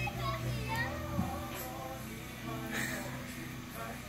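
A young child's voice in short phrases, speaking or singing, over background music.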